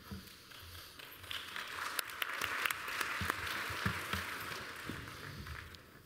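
An audience applauding briefly, swelling over the first few seconds and dying away near the end.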